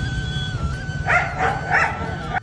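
A dog barking a few short times in the second half, over steady background music.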